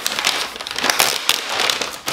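A Priority Mail envelope being torn open and crinkled in the hands, an irregular run of crackles.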